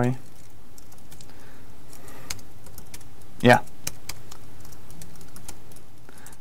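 Computer keyboard keys tapped in scattered, irregular keystrokes as commands are typed at a terminal, over a steady faint background hiss.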